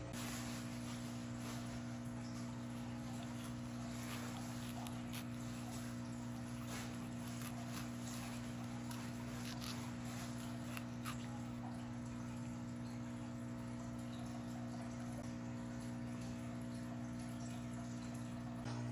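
Sauce simmering in a pan: faint, scattered small bubbling ticks over a steady low hum.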